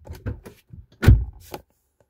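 Car door being shut: a single heavy thunk about a second in, after some light handling clicks. Closing the door presses its door-jamb switch, which turns off the interior dome light.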